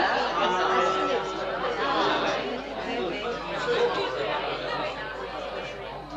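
Several people talking and exclaiming over one another at once: a room of excited chatter, loudest at the start and easing off a little toward the end.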